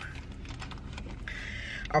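Steady low hum inside a car cabin, with faint clicking and a short stretch of rustling near the end, like hands handling something.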